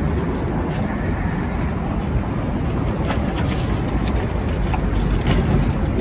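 Steady low rumble of city street traffic, with a few faint clicks.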